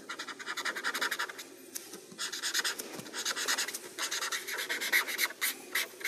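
Pencil scratching on paper in rapid back-and-forth sketching strokes, in three quick runs with short pauses between.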